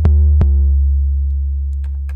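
Auto-sampled 808 bass on an Akai MPC One, played from the pads: deep sub-bass notes. A new note starts at the beginning and another about half a second in, then it rings on, fading slowly. Each note begins with a sharp click, a note-on click that comes on certain notes and that the player takes for a bug in the MPC.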